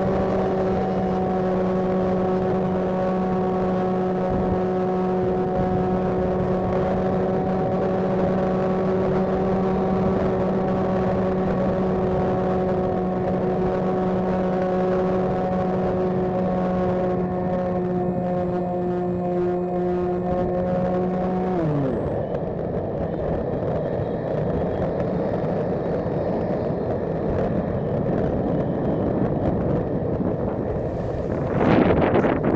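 Electric motor and propeller of a GoDiscover flying wing running at a steady pitch under wind rush. About 21 seconds in the throttle is cut and the pitch drops away, leaving only the rush of air as the wing glides down.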